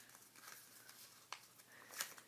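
Near silence: faint handling of a sheet of origami paper as it is folded and creased, with one small tick a little past the middle.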